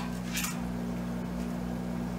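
A steady low hum with a few even tones, unchanging throughout, like the hum of electrical equipment running in the room.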